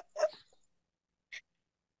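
The tail end of a person's laughter: one last short laughing breath, then silence broken by a single faint blip.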